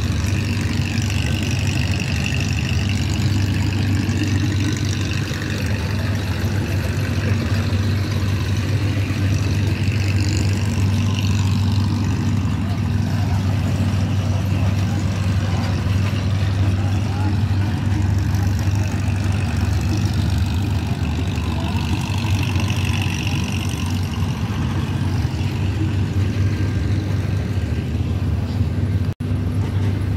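A steady low engine drone running without change, with faint voices in the background.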